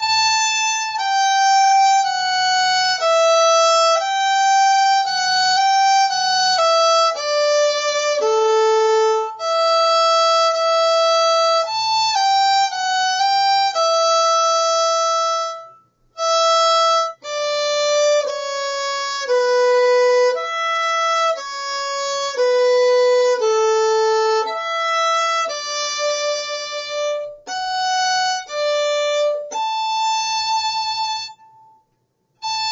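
Solo violin playing a simple beginner's exercise melody on the E and A strings, one held note after another with short bow lifts between them. The playing stops briefly about halfway through, then carries on.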